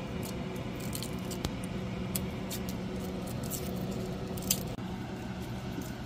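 Garlic cloves being peeled by hand, the dry papery skins crinkling in scattered light crackles over a steady low hum.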